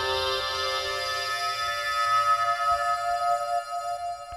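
Solo flute music: long held notes layered into a sustained chord, with a low drone that fades out about half a second in.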